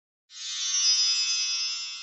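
Short electronic music sting: a bright cluster of many high steady tones comes in suddenly a moment in, then slowly fades.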